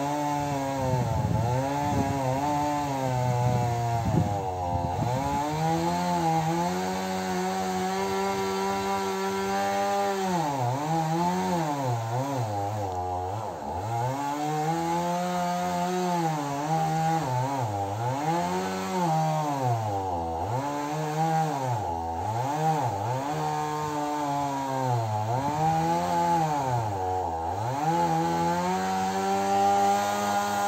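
Chainsaw engine running at high revs through a cut in a birch trunk. Its pitch holds steady at first, then from about a third of the way in it repeatedly sags and picks up again every second or two as the chain bites into the wood.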